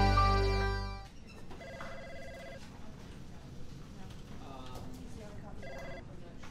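Music fades out in the first second. Then an office telephone rings with a warbling trill for about a second, and starts ringing again just before the end, over faint background voices.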